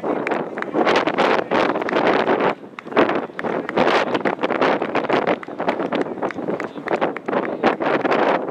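Wind buffeting the camera microphone in uneven gusts.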